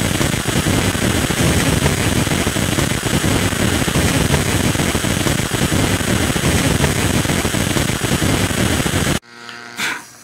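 High-voltage flyback arc buzzing and crackling loudly and steadily as it runs through powered high-voltage modules. It cuts off suddenly near the end, leaving a faint hiss with one short crack.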